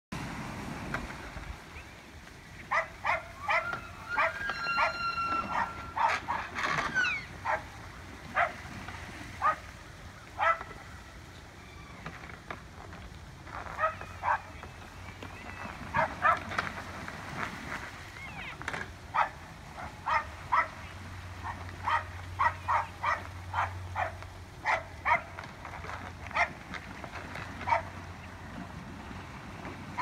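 Young bull elk sparring, their antlers clacking together in many short, irregular knocks. A thin, high whining call sounds about four seconds in.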